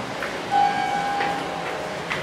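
Otis hydraulic elevator's chime: one clear tone that starts about half a second in and fades away after about a second, over steady background noise.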